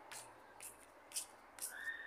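Faint footsteps on brick paving, about two steps a second, with a short steady whistle-like tone near the end.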